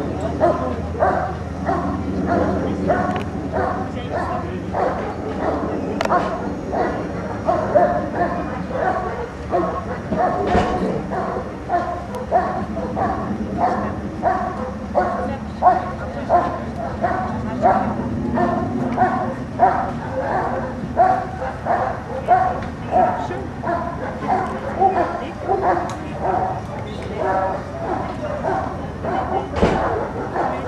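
A dog barking over and over in a steady, even rhythm, about two barks a second, without a break.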